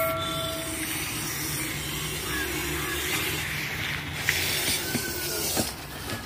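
Russell's viper giving a long, steady defensive hiss. A brief ringing tone fades out in the first second.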